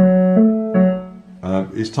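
Digital piano: three left-hand notes of a broken chord struck in turn, about a third of a second apart, ringing and fading. A man starts speaking near the end.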